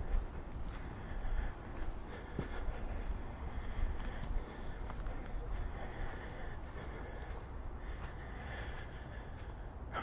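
Footsteps on a leaf-strewn dirt forest trail, with the walker's breathing close to the microphone over a low steady rumble.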